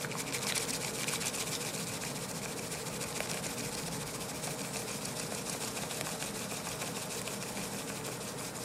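Bamboo tea whisk (chasen) beating matcha in a ceramic tea bowl, frothing the tea: a rapid, even swishing of many strokes a second that keeps up steadily.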